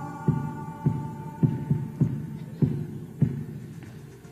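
A one-man band's foot-played kick drum keeping a slow, steady thumping beat, roughly one thump every half second to second. A held high note fades out under it during the first second or so.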